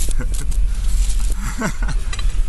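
Steady low wind rumble on the microphone, with a few light clicks and taps as a durian is handled on a plastic cutting board. A short voiced sound, like the start of a laugh, comes near the end.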